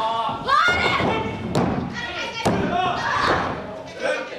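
High-pitched shouts and strained yells of wrestlers grappling, broken by two sharp thuds on the ring mat about a second apart.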